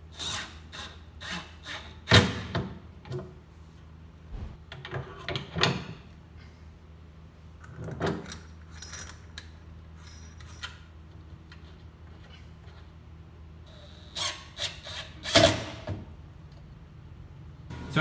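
A cordless drill driving screws in short runs, among sharp knocks and clunks from the metal filter assembly being handled. The busiest stretches are near the start and again near the end, over a steady low hum.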